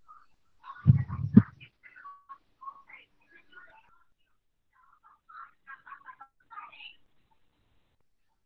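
Faint, indistinct voices heard over a video call, with a short, louder low bump or mumble about a second in.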